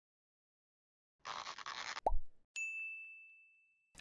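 Animated-logo sound effects: a soft hiss lasting under a second, then a short pop, then a single bright ding that rings for over a second as it fades.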